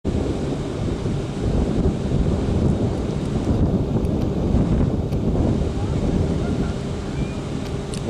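Wind buffeting the microphone: a loud, uneven low rumble, with a faint steady hum joining in past the middle.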